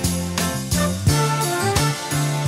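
Instrumental opening of a pop song, with no vocals yet: a steady beat of regular strikes under changing chords and a melody line.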